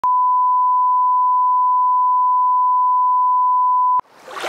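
Line-up test tone: one steady, pure beep held on a single pitch, the reference tone that goes with broadcast colour bars. It cuts off suddenly at the end.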